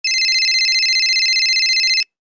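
Electronic telephone ringing: one steady, high, rapidly warbling ring that cuts off suddenly at the end.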